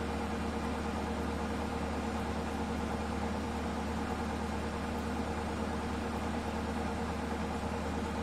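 Bosch Serie 8 front-loading washing machine spinning its drum at high speed on the final spin, a steady, even hum with a constant motor whine.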